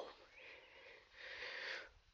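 Two faint breaths close to the microphone, the second a little longer.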